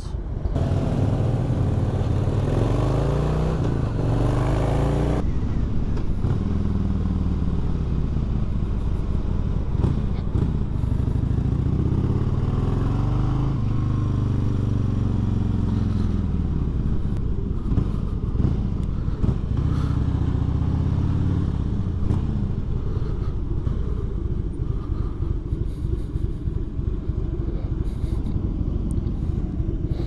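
V-twin cruiser motorcycle engine under way. Its pitch rises several times as it pulls through the gears and falls as the bike slows. Over the last several seconds it runs low and steady at slow speed.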